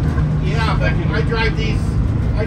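The 1978 Crown school bus's naturally aspirated Detroit Diesel 6-71 two-stroke inline-six running steadily under way, heard from inside the bus as a constant low drone. Voices talk over it.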